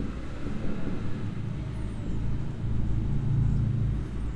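A steady low rumble, like distant traffic or machinery.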